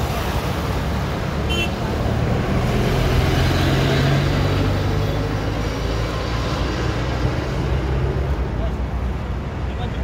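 Road traffic: vehicles driving past on a road. A large vehicle's engine hum is strongest about three to five seconds in.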